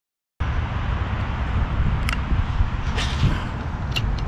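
Steady low outdoor rumble that starts abruptly after a brief silence, with three sharp clicks about a second apart near the middle and end.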